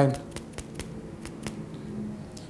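Light, careful taps of a rubber mallet driving a small hose insert into the cut end of a Magura hydraulic disc-brake hose, heard as several faint clicks.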